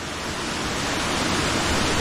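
Waterfall rushing: a steady, even hiss of falling water that grows slightly louder over the two seconds.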